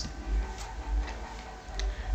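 A few faint, irregular clicks or ticks over a low steady background hum.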